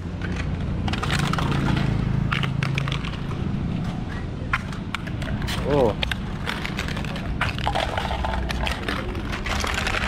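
Crushed aluminium cans clinking and clattering as they are picked up off the asphalt and tossed into a crate, many sharp clicks scattered throughout, over a steady low traffic hum.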